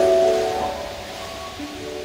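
Instrumental music for a figure-skating free program. Held chords fade away about half a second in, leaving a quieter passage with a few soft notes.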